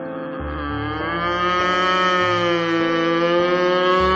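A girl wailing in one long, drawn-out cry that sounds like a cow's moo, starting about half a second in and wavering slightly in pitch. She is crying in distress.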